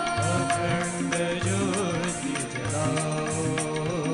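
Live Hindu devotional bhajan music: a sustained, gliding melody over a steady beat of hand drums and electronic percussion, from an ensemble of harmonium, synthesizer, tabla and octopad.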